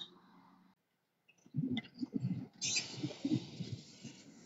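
Handling noise on a phone's microphone as it is carried up to a city bus's door: a run of irregular muffled knocks and rubbing, starting about a second and a half in, with a short hiss about two-thirds of the way through.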